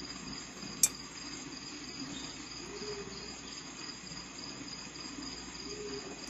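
A steady, high-pitched trill runs in the background, the kind crickets make, with a single sharp click just under a second in.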